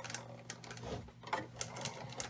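Hand crank of a Xyron 9-inch Creative Station turning, its rollers and gears giving a run of light, irregular clicks as a sheet feeds through the magnet-laminate cartridge.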